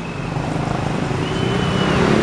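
Street traffic noise: a motor vehicle's low engine rumble growing louder, with a brief steady high whine in the second half.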